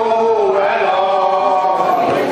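A group of older men and women singing a Hungarian folk song together in long held notes.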